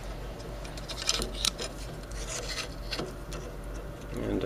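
Hands handling an old tar-filled capacitor block in its cardboard wrapping, with rubbing and a few short scrapes scattered through.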